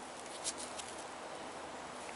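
Low steady hiss with a few faint, soft clicks and rustles, one about half a second in, from fingers handling a small plastic coin roll.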